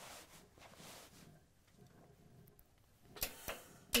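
Quiet handling of trouser fabric spread out on a pressing table: a soft rustle in the first second, then a couple of light knocks about three seconds in as the steam iron is taken up and set onto the cloth.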